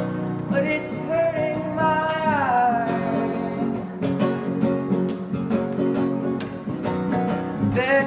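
A song played on acoustic guitar with a singing voice: strummed chords keep a steady beat while the voice holds a note that slides down about two seconds in.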